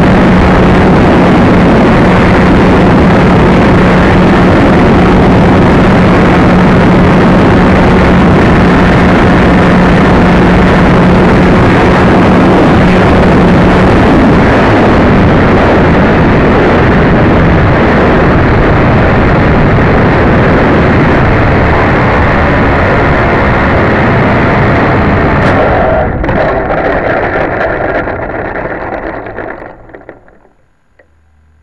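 Loud, overdriven rush of an RC trainer airplane's motor and airflow picked up by a camera on board, with a steady hum that drops out about halfway through. Over the last few seconds the noise falls away as the plane lands and comes to rest.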